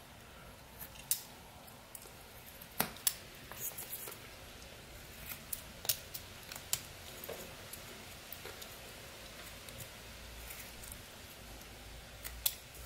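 Pocket knife blade paring small cuts in eastern white pine: a scattered run of short, sharp slicing clicks and scrapes, thinning out after about seven seconds.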